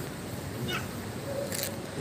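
A short high cry that falls in pitch, a little before the middle, followed by a sharp click.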